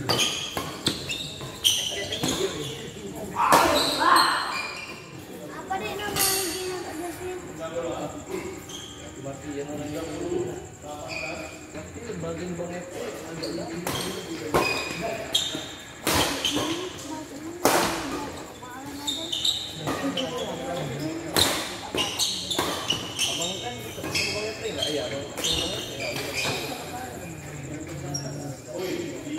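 Badminton doubles rally: sharp smacks of rackets hitting the shuttlecock and short squeaks of shoes on the court, with spectators' voices and shouts throughout.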